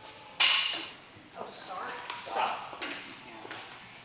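A loaded barbell clanks sharply about half a second in, the metal ringing briefly, followed by a few smaller knocks and clinks of bar and plates. Indistinct voices are heard as well.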